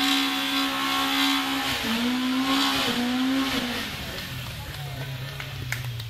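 Trials car's engine revving hard and held at high revs on a muddy hill climb, dipping briefly about two seconds in and picking up again, then falling to a lower, quieter note after about four seconds.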